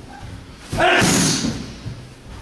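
A strike smacking into a handheld focus mitt about three-quarters of a second in, with a short shout on the blow, echoing in a large hall.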